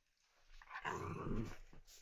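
Small dog play-growling while wrestling with another dog, a low growl starting about half a second in and lasting about a second.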